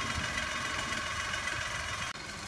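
Steady hum of an engine running at idle.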